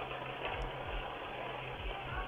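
Steady rushing noise of a house fire burning, heard through the doorbell camera's audio, with a low steady hum underneath.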